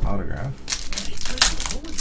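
Plastic crinkling in a few crackly bursts from trading cards and their plastic wrapping or sleeves being handled, with a voice heard at the start.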